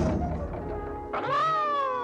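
Cartoon sound effects over background music: a thump as the cartoon cat hits the ground. About a second later comes a long meow that rises briefly, then slowly falls.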